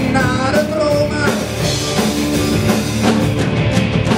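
Live rock band playing: a male singer over electric guitars, bass guitar and drums.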